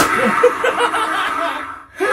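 Spirit Halloween Lil Jack Carver animatronic playing its recorded cackling laugh through its built-in speaker as it lifts its pumpkin head, a fast, loud run of laughter that fades near the end.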